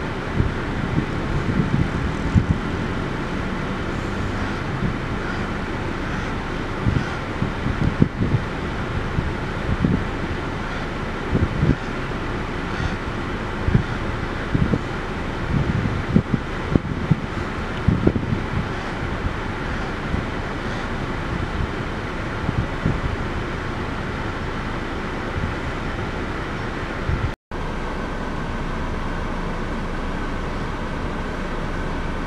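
Wind buffeting the microphone in irregular gusts over a steady low background rumble. The sound cuts out for a moment near the end.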